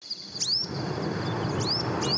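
Outdoor ambience fading in: a steady background hum with a few short rising bird chirps, about half a second in and again near the end.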